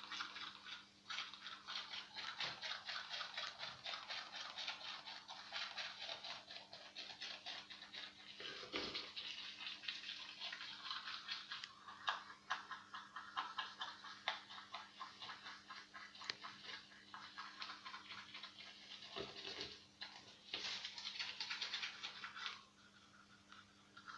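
Manual toothbrush scrubbing teeth in rapid back-and-forth strokes, with brief pauses about nine seconds in and again near twenty seconds in.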